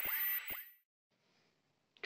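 The closing sound effects of an animated logo intro: two quick blips falling sharply in pitch, about half a second apart, with a high chime ringing out and cutting off within the first second.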